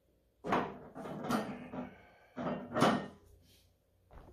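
Plate-loaded IronMind Little Big Horn lift knocking and clanking, metal on metal: two loud bursts about two seconds apart as the loaded horn is pulled up off the plate stack and set back down.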